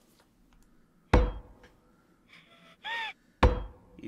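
Two hammer blows about two seconds apart, each sharp and dying away with a short ring. A brief call that rises and falls in pitch sounds just before the second blow.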